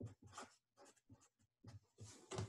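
Sharpie felt-tip marker writing digits on paper: a quick run of faint, short strokes with tiny gaps between them.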